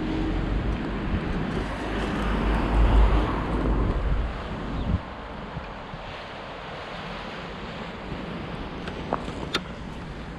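Wind buffeting the camera microphone, a low uneven rumble with hiss that is loudest about three seconds in and cuts off suddenly about five seconds in. A quieter, steady outdoor hiss follows, with a few light clicks near the end.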